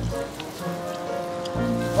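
Background music over the crackly noise of a roast pork rib being torn apart by gloved hands and chewed.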